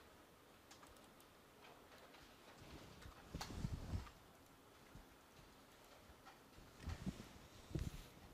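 Faint computer mouse clicks with low thumps on the desk, the loudest cluster about three and a half seconds in, when a double-click opens a program, and another near the end.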